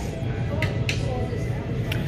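Room tone of a large store: a steady low hum with a few faint, brief higher sounds.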